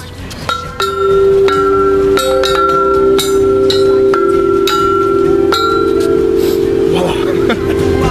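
Large outdoor tubular chimes, tall metal tubes struck one after another with a mallet, about a dozen strikes roughly every half second. Each note keeps ringing, so the tones pile up into a sustained chord that stops near the end.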